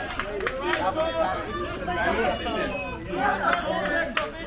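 Overlapping, indistinct chatter of several spectators' voices, with no single voice standing out.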